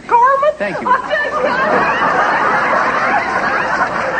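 Studio audience laughing and chattering, many voices overlapping, swelling into a dense crowd laugh after about a second.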